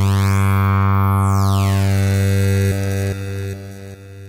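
Phase Plant software synth holding one low note through its bitcrusher, whose sample rate is swept by a Curve modulator, so a bright, gritty tone glides down and up above the note. The note drops in level near three seconds in and fades.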